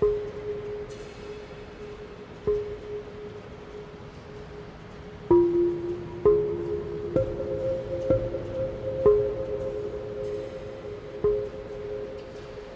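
Large Korean earthenware jars (onggi) struck one at a time with a long-handled mallet, about eight strokes at uneven intervals that come closer together in the middle. Each stroke leaves a low, humming pitched ring that carries on under the next, in a few different pitches. The ringing is carried by the natural echo of a large steel-walled dome, with no effects added.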